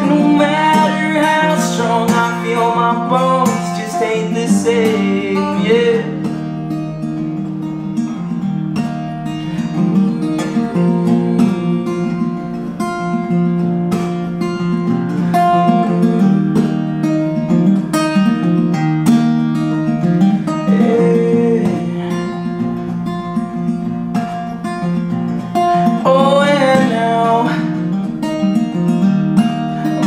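Acoustic guitar being strummed, with a male voice singing at the start and again near the end; in between the guitar plays on alone.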